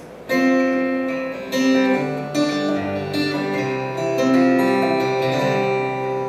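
Acoustic guitar playing the opening chords of a country gospel song, entering about a third of a second in, with chords ringing and changing every second or two.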